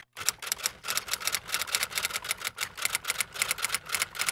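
Typewriter keys clacking in a rapid, even run of about seven strikes a second. It is a typing sound effect laid under a title card.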